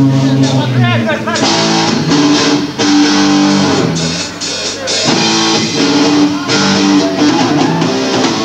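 Live rock band playing: electric guitar chords ringing over bass, with a wavering, bending note about a second in.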